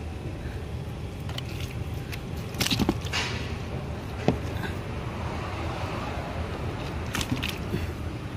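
A pile of wet, freshly caught climbing perch being shifted by hand in a container: scattered knocks and rustles, the loudest about three seconds in. Under them runs a steady low hum.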